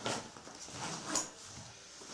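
Handling noise from a paintball gear bag's front pocket: fabric rustling as it is worked, with one sharp click about a second in.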